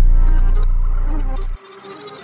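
A trap beat's 808 bass holding one long low note with no drums over it, fading and then cutting off suddenly about one and a half seconds in. Only faint, thin high sounds remain after the cut.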